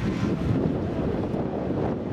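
Wind buffeting the camera microphone: a steady, fluttering low rumble.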